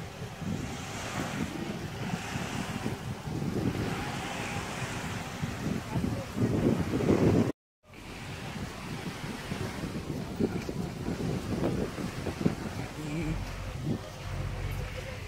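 Gentle surf washing onto a sandy beach, with wind buffeting the microphone. The sound cuts out completely about halfway through, then wind noise returns with faint voices.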